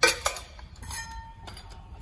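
Metal clinking as a cordless drill fitted with a steel hole saw is picked up and handled: a sharp clink at the start, another just after, and a short ringing clink about a second in.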